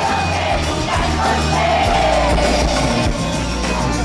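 Live pop band playing loudly on a concert stage, with steady bass notes under a sung vocal line and the crowd yelling along.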